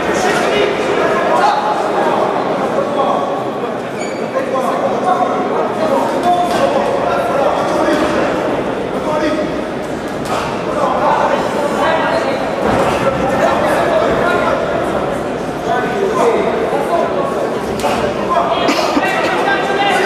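Spectators at a boxing match shouting and calling out over one another, echoing in a large hall, with a few sharp knocks among the voices.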